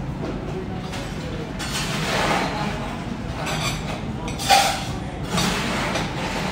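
Restaurant room sound: voices over a steady low background hum, with a short sharp sound about four and a half seconds in.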